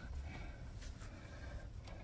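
Quiet room tone with a few faint clicks.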